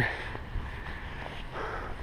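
Wind noise on an action camera's microphone as the wearer walks, a low, even rumble with no distinct events.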